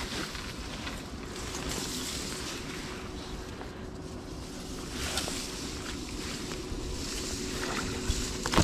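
Wind buffeting the microphone together with the rustling of dry reed stems being pushed through: a steady noisy hiss with a few louder swells.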